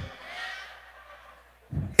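A pause in a man's amplified speech in a large hall: his last word dies away in the room's echo, leaving faint room murmur that fades almost to nothing. His voice comes back near the end.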